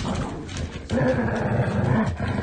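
An animal vocalising in two drawn-out stretches, with a short break about a second in.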